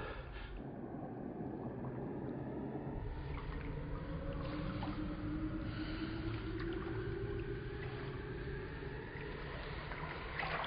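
Muffled pool water heard as if from underwater: a dull, steady wash with faint gurgling, and a low drone that slowly swells and glides up and back down through the middle.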